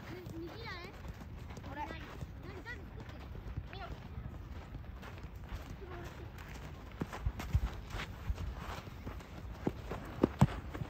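Children's voices calling out across an outdoor soccer pitch, with running footsteps on gravelly dirt and sharp ball kicks that come thicker from about seven seconds in.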